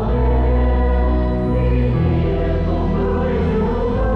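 Mixed choir singing a Vietnamese Catholic hymn in full harmony over sustained keyboard chords, the harmony shifting about halfway through.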